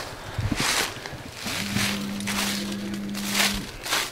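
Footsteps crunching and rustling through dry fallen leaves, several steps in a row. A steady low hum runs from about one and a half seconds in until shortly before the end.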